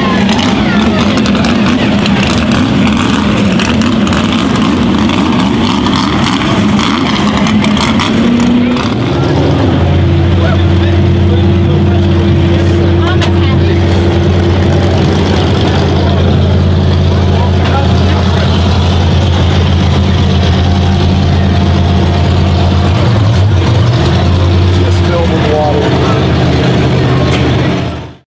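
Mud truck engines running unevenly amid crowd voices. From about nine seconds in, a lifted Ford Bronco mud truck's engine idles steadily close by, with a deep even hum.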